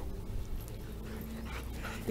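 Golden retriever panting, over a steady low rumble.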